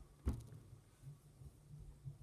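A single short knock about a third of a second in, followed by a faint steady low hum.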